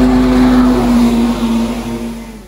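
An engine running at high revs, held at a nearly steady pitch with a lot of hiss, tailing off near the end.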